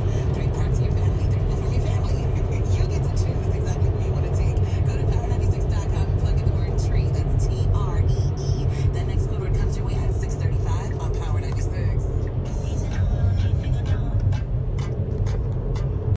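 Steady low road and engine rumble inside a moving car's cabin at highway speed, with scattered clicks over it.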